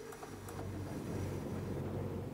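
Steady low hum under a faint even background noise, with a few faint ticks near the start.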